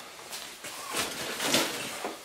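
Cardboard and paper packaging being handled: irregular rustling with small knocks, the loudest about one and a half seconds in.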